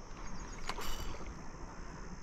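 A hooked rohu swirling and splashing at the surface of the pond as it fights the line, with two short clicks about a second in.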